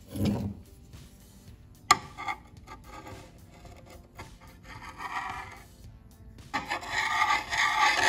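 Screwdriver scraping and rubbing on a metal-sludge-covered magnet in a CVT oil pan. There is a dull bump at the start, a sharp click about two seconds in, and longer, louder scraping near the end.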